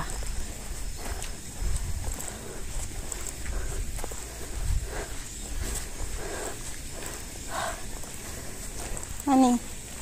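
Footsteps and handling of a phone carried on a walk, with wind rumbling on its microphone, and a short vocal sound near the end.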